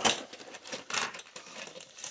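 Cardboard toy box, paper booklets and packaging being handled and pulled out: scattered rustles and light taps, sharpest just at the start and again about a second in.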